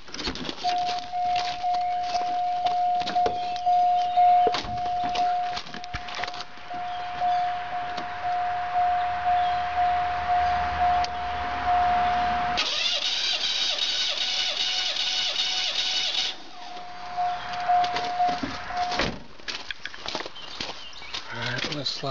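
A car's warning chime sounds steadily with the key in the ignition, among the clicks of keys and handling. The chime stops while the starter cranks the V6 for about four seconds with all its spark plugs out, a fast, even, high whirring. It then sounds again briefly.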